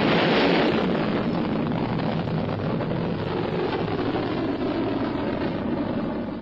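Solid-fuel rocket motor of a Polaris missile firing as the missile climbs: a continuous rumbling rush, loudest in the first second and then steady.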